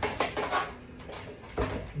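A few short knocks and some rubbing as a 12-inch Dobsonian telescope tube is handled and shifted in its base.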